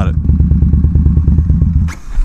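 Motorcycle engine running steadily under way, with an even pulsing beat of about a dozen pulses a second. A short burst of rushing noise comes near the end.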